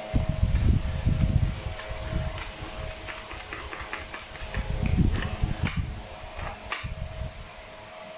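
Homemade cardboard pistol being dry-fired by hand, its trigger and blowback slide giving light clicks, the two sharpest late on. Uneven low rumbling comes and goes underneath, with a faint steady hum.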